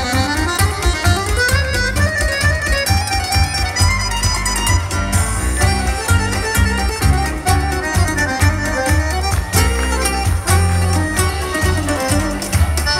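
Live band playing amplified Balkan folk music through the PA, with accordion and guitars over a heavy, steady bass beat.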